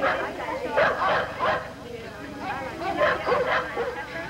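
Dogs barking, mixed with voices.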